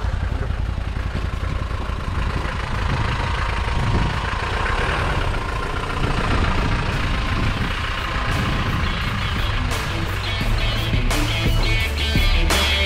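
A vehicle engine running steadily with a low rumble, under background music that grows clearer near the end.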